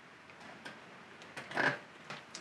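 Faint small clicks and rustle of multimeter test leads and a power cord being handled, with a short breathy sound about a second and a half in.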